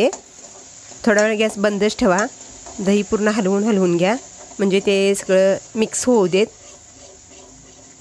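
A woman speaking in short phrases, over a steady high-pitched whine in the background.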